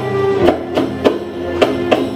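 Live Arabic ensemble music: sharp percussive strokes at a regular beat, roughly two or three a second, under a held melodic line.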